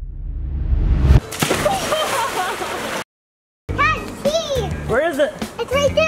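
Music with its highs swept away and back, breaking into a splash of water about a second in as someone lands in a swimming pool, with voices over it. The sound cuts out completely for a moment just after the middle, then a child's high voice comes in over music.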